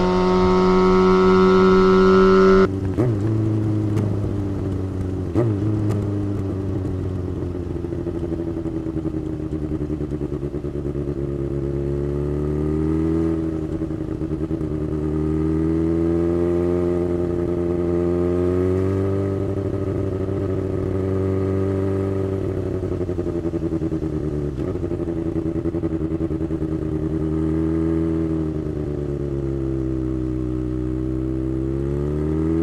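Kawasaki Ninja ZX-6R's inline-four engine with an aftermarket exhaust, riding in traffic: the revs rise and fall gently several times with throttle roll-offs and pick-ups. For the first three seconds a steady held tone sounds over it, then stops abruptly.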